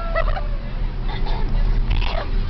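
Steady low engine and road rumble of a moving school bus heard from inside the cabin, with high-pitched laughter and passengers' voices over it.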